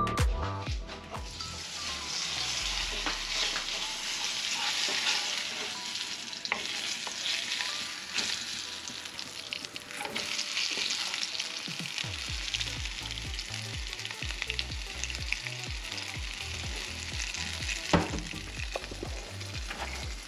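Flounder frying in a nonstick pan, a steady sizzle with crackles, stirred and turned with a wooden spatula. The sizzle comes in about a second in.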